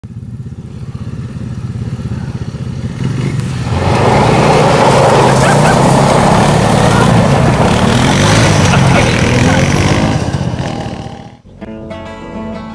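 Small off-road vehicle engines (ATV and go-kart) running and pulling away, the engine note rising and falling. It grows much louder about three and a half seconds in, fades near the end and then cuts off suddenly.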